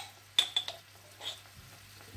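Metal spoon clinking against a glass jar while spooning out wholegrain mustard: one sharp clink with a brief ring about half a second in, a few lighter taps right after, and a faint tap later.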